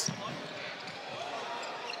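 Steady crowd murmur in a large indoor sports arena.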